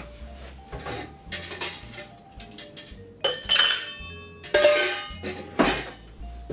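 Ice cubes dropped one by one with tongs into a metal tin shaker, each landing with a clink and a short metallic ring. There are several drops, the loudest in the second half.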